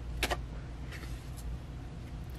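A tarot card being pulled from the deck with a quick swish about a quarter second in, then fainter papery rustles as it is laid down on the cloth-covered table, over a steady low hum.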